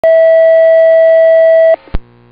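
Fire-dispatch paging tone received over a radio scanner, alerting a fire station: one loud, steady, single-pitch tone held for nearly two seconds that cuts off sharply, followed by a brief click.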